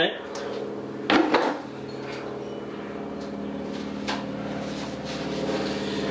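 Airplane flying over: a steady drone made of several even tones, getting slightly louder toward the end. A brief rustling knock about a second in.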